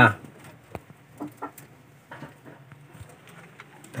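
Faint calls from pigeons in a wooden loft, a few soft low sounds scattered among light clicks and knocks.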